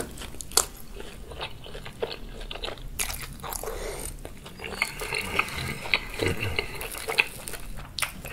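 Close-miked chewing of a bitten, sugar-coated fried Korean corn dog: a run of irregular sharp crunches and crackles from the crisp batter, with wet mouth sounds.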